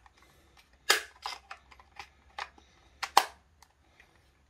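Sharp plastic clicks and knocks as the battery compartment of a Serene CentralAlert bedside alarm-clock hub is closed up and the unit handled. The two loudest clicks come about a second in and just after three seconds, with lighter ticks between.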